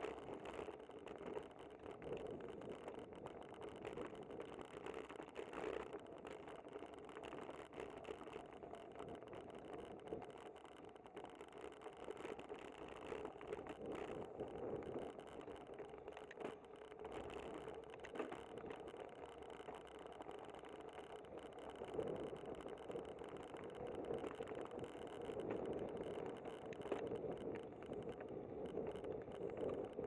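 Bicycle being ridden on a paved street: steady road and wind noise with many small rattles and clicks from the bike. It grows a little louder in the last third.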